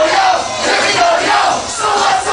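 A packed party crowd shouting and chanting together in unison, with music underneath.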